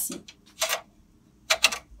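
Small embroidery frame being slid into the frame holder of a Brother PR embroidery machine: a short scrape about half a second in, then a few quick clicks near the end as it seats.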